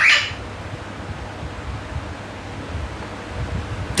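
Low, steady background rumble in a room during a pause in talk, with a man's word trailing off right at the start.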